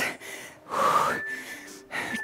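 A woman's heavy, breathy exhale from exertion during a dumbbell squat and knee-lift exercise, loudest about half a second in and lasting under a second.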